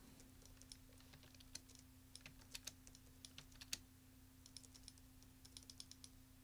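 Faint computer keyboard typing: scattered key presses in short runs, as numeric values are typed into fields, over a steady low electrical hum.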